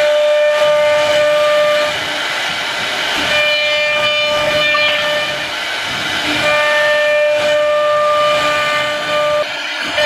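CNC router spindle whining at a steady high pitch while its bit cuts through a thin board, over a rushing hiss of cutting. The whine drops out briefly about two seconds in and again about six seconds in, then returns.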